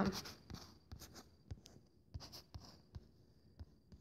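Faint taps and short scratches of a stylus writing numbers on a tablet screen.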